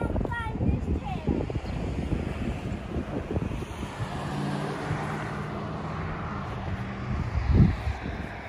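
A vehicle passing on an adjacent road makes a steady rushing hum through the middle, with wind on the microphone. Footsteps in wood-chip mulch are heard at the start, and there is a thump near the end.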